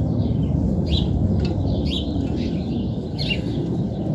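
A few short bird chirps, about four in all and spaced irregularly, over a steady low rumble.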